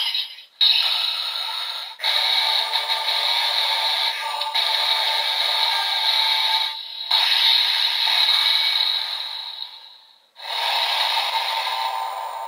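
Bandai DX Evol Driver toy belt, loaded with the Rabbit and Dragon Evol Bottles, playing its electronic transformation sound effects and music through its small built-in speaker, thin with no bass, in several stretches with short breaks. The pairing triggers only the generic trial-form sound, not a special 'Evol Match' call.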